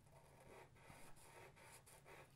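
Faint scratching of a felt-tip marker drawing on paper, a few short strokes.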